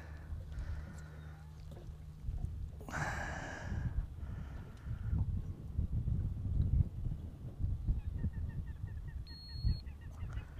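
Irregular low rumbling and knocks of wind and water around a small boat, with a brief hissing rush about three seconds in. Near the end comes a short high electronic beep from a digital fish scale settling on the bass's weight.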